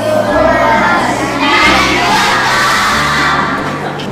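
A group of girls shouting and cheering together, many voices at once, over background music.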